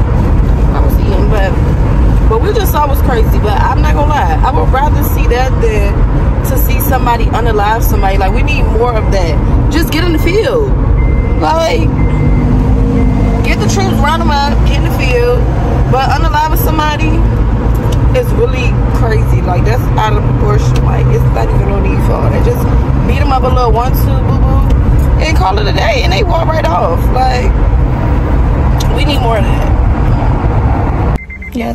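A voice going on continuously over a steady low rumble of a car cabin.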